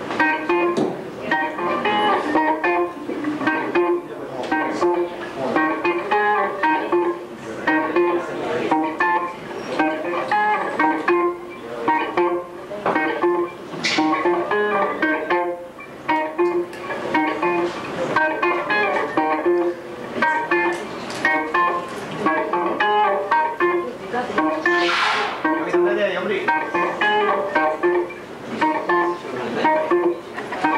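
Electric guitar played live, picking a repeating riff with a low note returning about once a second.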